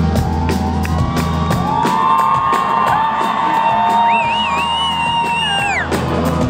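Rock band playing live. About a second and a half in, the drums and bass drop back, leaving long held notes; a higher line joins around four seconds in, and the notes slide down and fall away just before the end.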